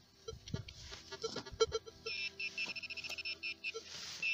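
Handheld metal-detecting pinpointer probed in a hole, beeping fast: about halfway in it breaks into a rapid run of high beeps, about ten a second, the 'going crazy' alarm that means metal is right at its tip. Before that there are short clicks and scrapes of the probe in the soil.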